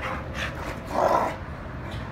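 Two dogs play-wrestling, with one short, louder vocal sound from a dog about a second in.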